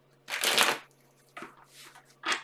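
Tarot deck being riffle-shuffled by hand: one loud, quick flutter of cards riffling together about half a second in, then a few softer rustles as the deck is handled and squared.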